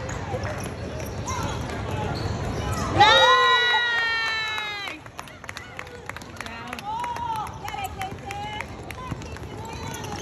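Basketball bouncing on an indoor court amid players' and spectators' voices, with squeaks and footfalls. About three seconds in comes a loud held shout lasting about two seconds; dribbling knocks follow in the second half.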